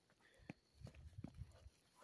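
Faint footsteps on a rocky trail: a few light clicks and scuffs of shoes on loose stones.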